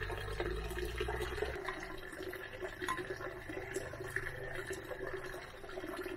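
Fermented plant juice trickling and dripping through a plastic colander into a stainless steel bowl as soaked plant mash is tipped out of a glass jar, with small ticks and patters throughout.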